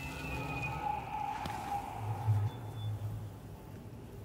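Quiet film soundtrack: a few soft sustained tones with a low hum underneath, and one faint click.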